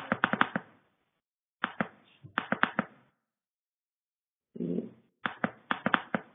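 Computer keyboard typing in three short bursts of quick keystrokes, with a brief muffled sound shortly before the last burst.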